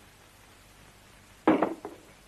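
A sword set down with a brief clatter about a second and a half in, followed by a smaller knock; quiet room tone before it.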